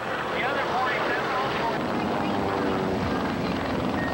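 Piston engines of several low-flying propeller fighter planes, a steady drone whose pitch slides up and down in the first second as they pass, then settles into steady engine tones.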